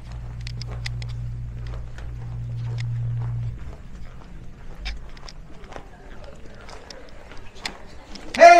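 Footsteps walking briskly, heard as scattered short clicks, over a steady low hum that cuts off about three and a half seconds in.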